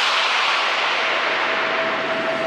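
A white-noise sweep in an electronic dance music mix, its top end slowly falling away, with the bass and beat dropped out. A steady synth tone comes in about three-quarters of the way through.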